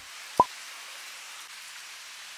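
Heavy rain pouring onto foliage and a paved path, a steady hiss of falling water. One sharp pop about half a second in.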